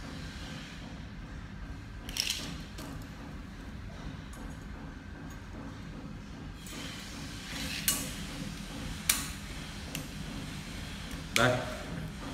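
A retractable steel tape measure being pulled out and handled against a machete blade: a few short, sharp clicks and clinks, one about two seconds in and several between eight and ten seconds in, over a steady low hum.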